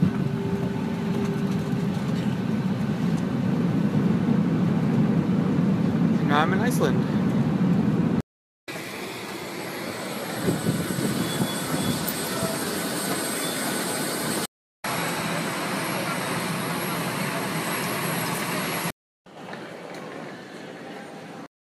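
Airliner and apron noise in three short clips separated by brief silences. First a low, steady rumble, then steady noise with people's voices in the background, then a steady jet whine beside a parked Icelandair airliner, with high, constant whistling tones.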